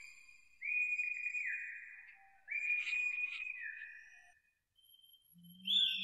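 High whistle-like tones as part of a stage performance's soundscape: two long held tones, each dropping to a lower pitch and fading, then a short gap and a low hum with another falling high tone near the end.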